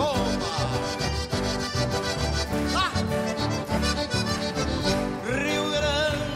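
Live band playing an upbeat gaúcho folk song: acoustic guitars over a steady bass beat.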